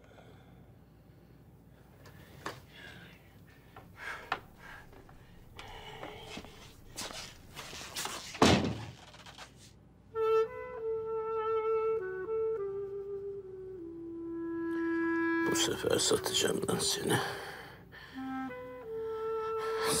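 A few soft knocks and handling noises from a wooden wall panel being worked open, with one heavy thump partway through. About halfway, a gentle flute-like melody of background music begins and carries on to the end.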